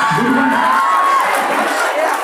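Audience cheering and shouting, with a long high whoop in the first second or so.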